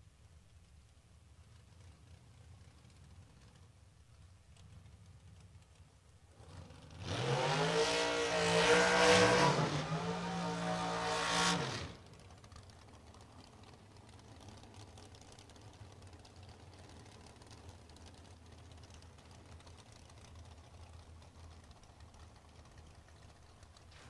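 Drag racing car's engine at full throttle for about five seconds, starting about seven seconds in, its note climbing and wavering as it accelerates down the strip, then cutting off abruptly. A faint low hum fills the rest.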